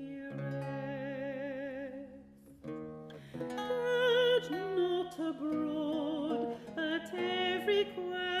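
A mezzo-soprano singing with a wavering vibrato, accompanied by a plucked lute. About two seconds in the voice stops for a moment, leaving only soft lute notes, then the singing resumes.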